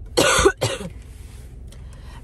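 A woman coughing twice in quick succession, a congested cough from a head cold, inside a car.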